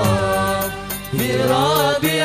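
Male vocal group singing a sholawat (Islamic devotional song in Arabic) in harmony, with instrumental backing. One phrase fades out a little before the middle and the next starts just after it.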